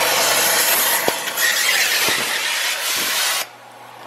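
Oxy-acetylene cutting torch blowing a steady, loud hiss as it cuts through a bolt, with a few faint knocks, then shut off abruptly about three and a half seconds in.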